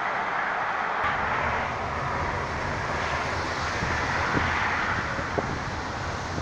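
Snowmelt-swollen Truckee River rushing as a steady hiss, joined about a second in by the low rumble of a vehicle.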